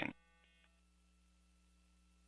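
Near silence with a faint, steady hum made of several low tones; a few higher faint tones stop about half a second in. The rocket itself is not heard.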